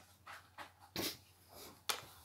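A dog making a few short sounds, the loudest about a second in, with a sharp click near the end.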